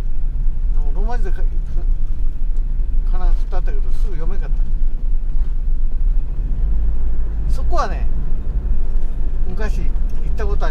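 Steady low rumble of a vehicle driving on a road, engine and tyre noise.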